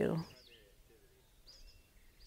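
A few faint, high bird chirps, scattered over an otherwise very quiet background.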